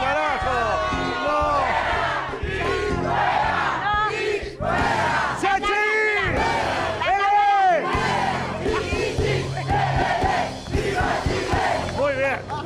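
A crowd of voices shouting and chanting loudly over music with a steady bass line, with the loudest drawn-out shouts about six and seven and a half seconds in.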